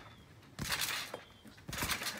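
A trampoline BMX bike and its rider landing on a trampoline mat: two sudden thumps with a brief rattling crash, about half a second in and again near the end, the second as the missed trick ends with the bike down on the mat.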